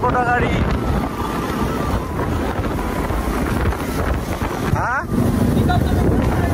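Wind buffeting the microphone over the low rumble of motorcycle engines, recorded while riding in a group of motorcycles. A brief rising pitched sweep comes a little before the end.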